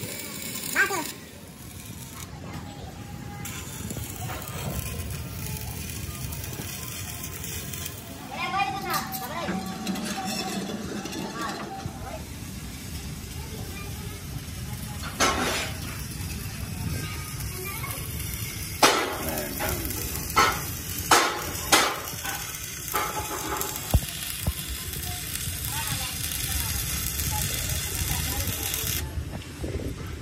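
Workshop noise: a steady low rumble with voices now and then, and a run of sharp knocks in the second half, several of them close together.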